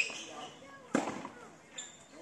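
Tennis balls struck by rackets in a doubles rally: two sharp hits about a second apart, the second the louder, with voices faintly in the background.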